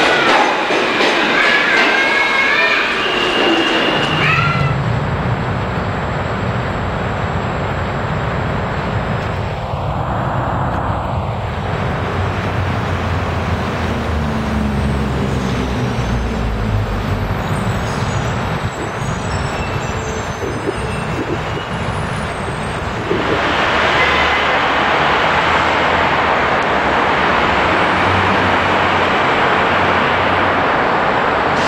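An NYC subway train pulling out of an underground station, giving a wavering high squeal over its rumble for the first few seconds. A low vehicle rumble with slowly rising tones follows, and about three quarters of the way through it gives way to louder road traffic noise as a car passes close by.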